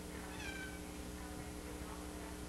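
A cat meows once, a short call a little under a second in, over a steady low hum.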